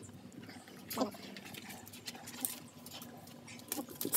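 Wet Labrador puppy giving a brief whimper about a second in, with a couple of other faint short sounds from it as it is held and handled.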